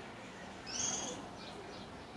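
A small bird calling nearby: one high, clear call of about half a second, a little past halfway through, then a few fainter short chirps.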